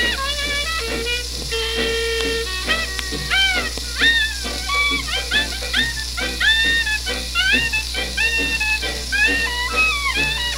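A 1920s small-band jazz recording playing from a 78 rpm shellac record on a record player. High instrument lines swoop and slide in pitch over the band, with steady record surface hiss and a low hum beneath.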